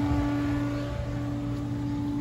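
Steady hum of running pool equipment at the equipment pad: a constant low drone that holds one pitch, with a brief dip about halfway through.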